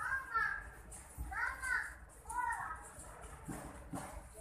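A young child's voice giving three high-pitched calls, each rising and falling in pitch, about a second apart.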